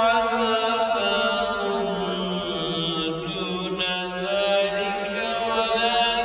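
A single voice chanting in long, drawn-out melodic phrases that glide slowly up and down without a break.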